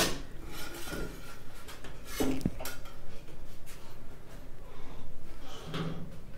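Hand-stitching a buttonhole in cotton kurta cloth: thread drawn through the fabric and the cloth rubbing and rustling under the hands, in a few short strokes.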